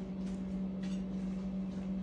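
Steady low electrical hum of a kitchen appliance running, with two faint clicks.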